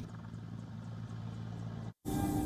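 Military helicopter hovering low: a steady low drone of engines and rotor, cutting off suddenly just before the end.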